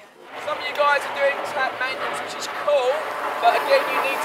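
Speech only: voices talking outdoors, with no other clear sound.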